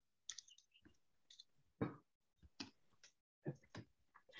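A few faint, scattered clicks and small short noises over near silence, the loudest about two seconds in.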